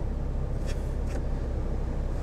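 A 2020 MINI Cooper S Countryman's 2-litre turbocharged four-cylinder engine idling, heard from inside the cabin as a steady low hum.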